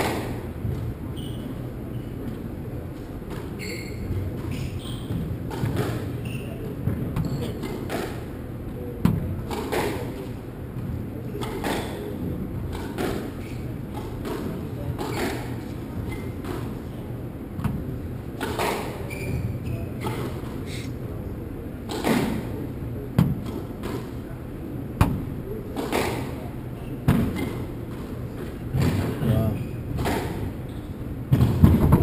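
A squash rally: the ball is struck by racquets and smacks off the court walls in sharp, irregular knocks about every one to two seconds.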